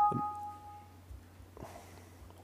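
Laptop system chime: two electronic notes, a lower one and then a higher one just after, ringing together and fading out about a second in. It is the alert of a device being connected to the laptop.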